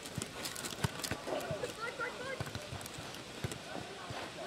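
Nohejbal (footnet) rally on a clay court: irregular dull knocks of the ball being kicked, headed and bouncing, with players' footsteps on the clay. The sharpest knock comes about a second in.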